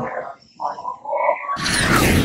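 A faint speaking voice, then about one and a half seconds in a sudden loud rushing noise cuts in and holds steady.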